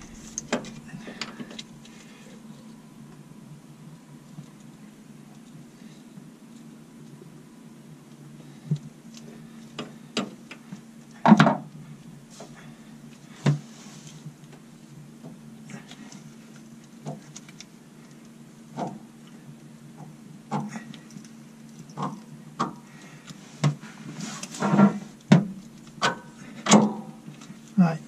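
Scattered knocks and clicks of metal parts being handled as a narrowboat's stern gland housing is worked back along the propeller shaft, over a low steady hum; the knocks come closer together near the end.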